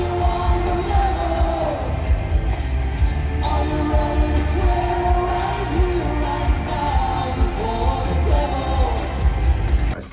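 Rock band music: a singer's melody over drums and bass guitar, with a short break in the vocal line about three seconds in.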